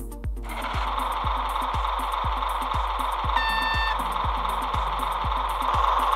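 Sound decoder of an H0-scale Märklin Köf II model diesel shunter playing its engine sound through a tiny 9x11 mm speaker, starting up about half a second in and running steadily, with a short horn toot near the middle; the master volume is turned well down to protect the speaker. Background music with a steady beat runs underneath.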